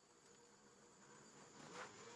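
Near silence: faint, steady insect chirring of a woodland ambience, with a brief soft swell near the end.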